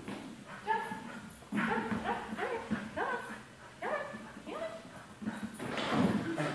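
A dog barking, a run of short barks that each fall in pitch, coming roughly every half second to a second.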